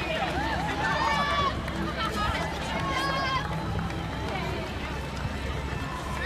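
Footsteps of a large pack of runners on asphalt, mixed with crowd chatter and scattered shouts, over a steady low hum.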